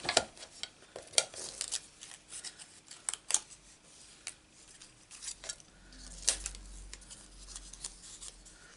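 Irregular small clicks, taps and scrapes as a pointed metal tool picks die-cut cardstock leaves free over plastic cutting plates.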